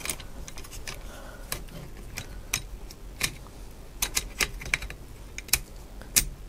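Scattered small clicks and light knocks of hard plastic and metal parts as a DJI Zenmuse X5 gimbal camera is handled and offered up to the Osmo handle's mount.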